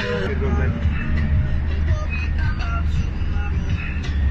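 Steady low rumble of a bus engine heard from inside the passenger cabin, with indistinct chatter of passengers over it.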